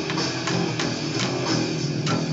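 Heavy nu-metal rock track with guitars and a steady drumbeat, with an electric bass played along to it.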